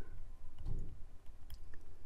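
A stylus writing on a tablet or pen display: a few faint taps and one sharper click about one and a half seconds in, over a low steady background hum.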